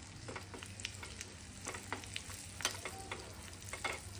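Oil sizzling in a small steel tempering pan as a tempering of spices and dal fries, with a steel spoon stirring and scraping against the pan. Scattered sharp pops and clicks throughout.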